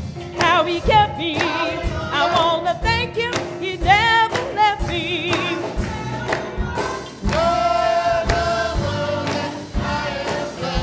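Gospel music: a church choir and congregation singing, the voices wavering in vibrato.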